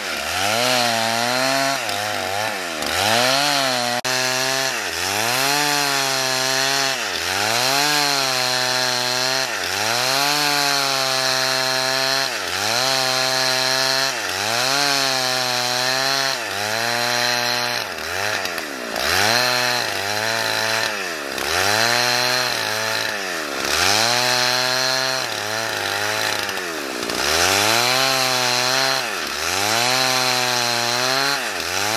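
Husqvarna two-stroke chainsaw ripping a pine log lengthwise into boards, running loud and steady throughout. Its engine pitch dips sharply and climbs back every second or two as the bar works along the cut.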